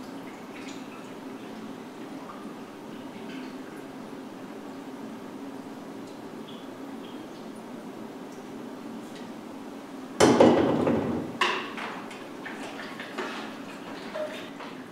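Photographic fixer being poured from a graduated cylinder into a film developing tank, a steady trickle of liquid. About ten seconds in comes a sudden loud knock, followed by a few smaller clicks as the tank is handled.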